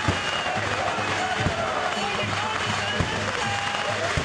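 Lively music with a gliding melody over a pulsing drum beat, mixed with crowd noise. Sharp bangs come about a second and a half apart.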